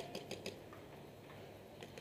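Paintball markers firing at a distance: a quick string of faint pops, about ten a second for half a second, then a couple more near the end.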